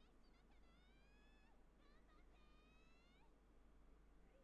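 Near silence: room tone, with two faint, drawn-out high-pitched sounds, each about a second long and rising slightly in pitch, the first about half a second in and the second past the middle.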